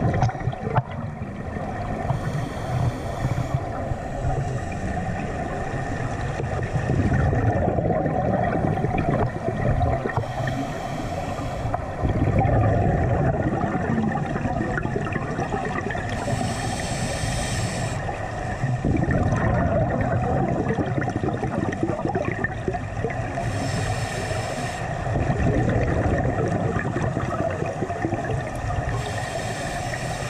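Underwater sound through a camera housing: a steady muffled rumble, broken about every six to eight seconds by a burst of hissing bubbles from a scuba diver's exhaled breath, five times in all.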